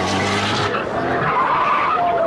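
A car engine running loud while tyres skid on the road; the engine note drops away about two-thirds of a second in, leaving the skid noise.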